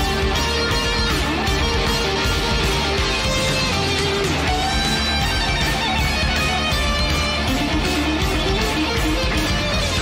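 Guitar-driven heavy rock song playing at a steady, loud level, with electric guitar and bass.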